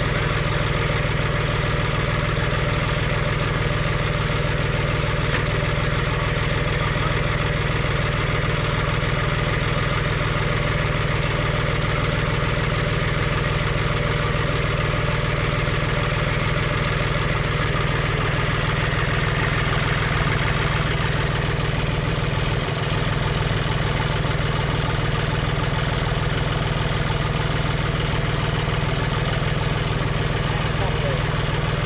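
John Deere 5050D tractor's three-cylinder diesel engine idling steadily.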